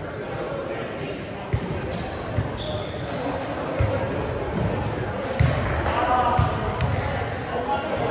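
Volleyballs being hit and bouncing on a hardwood gym floor during warm-up, a thud about every second, echoing in a large gym over the chatter of voices. A couple of short high squeaks come in about two and a half seconds in.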